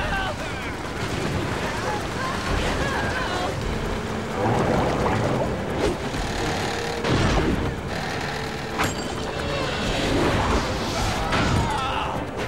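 Storm-at-sea sound effects from an animated soundtrack: a constant wash of crashing waves with heavy booming impacts, and short shouts or grunts from the characters.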